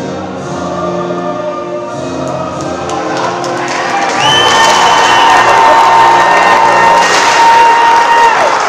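The closing bars of a recorded anthem played over the arena speakers end on one long held high note, while crowd cheering and applause swell up from about halfway through.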